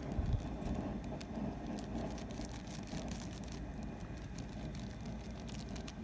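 A dye-powder packet being shaken and tapped over a bowl, giving faint scattered crinkles and clicks over a steady low rumble.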